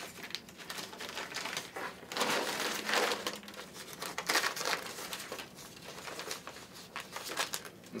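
Crinkling and rustling of a DuPont Tychem respirator hood's stiff coated fabric as it is handled and bunched, in irregular bursts that are loudest a couple of seconds in.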